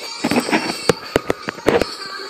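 Handling noise on the recording device: rubbing against the microphone, then a quick run of five or six sharp knocks in the second half as it is moved and bumped.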